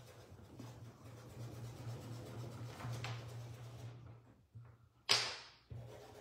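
Faint scratchy rubbing of a paintbrush working paint into fabric over a steady low hum, with one short sharp whoosh about five seconds in.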